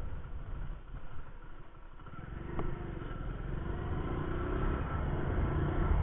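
Hero Honda Passion Plus 100 cc single-cylinder motorcycle running along at low speed, heard from the rider's seat, with wind on the microphone. The sound dips a second or so in and then builds again, with a single click shortly after.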